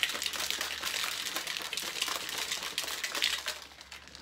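Plastic shaker bottle of water and pre-workout powder being shaken hard, a fast, even rattling slosh that mixes the powder into the drink and tails off near the end.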